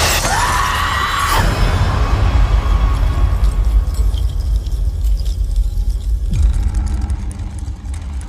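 Horror trailer score and sound design: a loud crashing hit carries a shrill tone that rises and holds for about the first second and a half, then gives way to a heavy, dense low rumble.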